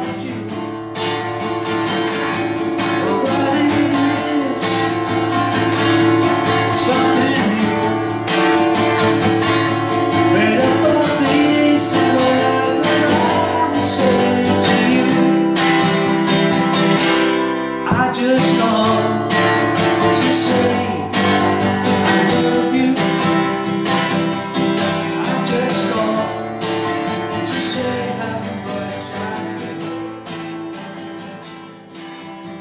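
Acoustic guitar strummed in a steady rhythm, with a man singing along over it; the playing eases off near the end.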